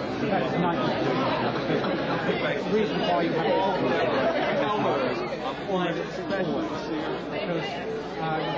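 Many people talking at once around dinner tables: a steady hubbub of overlapping conversation in which no single voice stands out.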